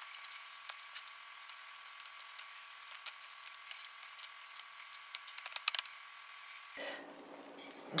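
Quiet handling sounds of hands working cookie dough and loose oat flakes on a plastic cutting board: scattered light clicks and taps, with a quick run of clicks a little past the middle, over a faint hiss.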